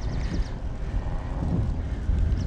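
Wind buffeting the microphone of a bike-mounted camera while riding, a steady low rumble with some road noise from the tyres on asphalt.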